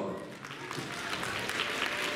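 Audience applauding, the clapping building up about half a second in and carrying on steadily.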